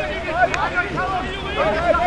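Spectators' voices talking and calling out close by, with more chatter behind them. There is one short click about a quarter of the way in.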